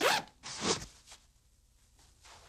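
Zipper on a leather bag being pulled, two quick zips within the first second, the first the louder.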